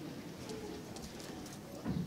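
Auditorium stage ambience with no music playing: soft murmured voices, scattered small clicks and shuffles of musicians settling at their stands, and a low thump near the end.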